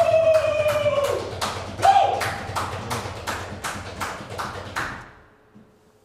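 A live acoustic duo ending a song: a long held sung note that falls in pitch as it ends, then a brief second note. Underneath, evenly spaced percussive taps, about three a second, grow fainter and stop about five seconds in.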